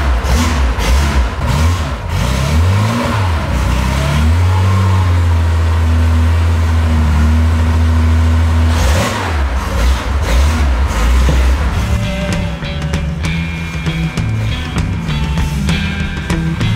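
1969 Porsche 911 T's air-cooled flat-six revving up and down a few times, then held at steady revs for several seconds. Guitar music comes in about three-quarters of the way through.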